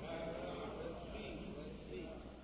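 Faint voices from the congregation in a live 1980 sermon recording, wavering in pitch, over a steady low hum from the old recording.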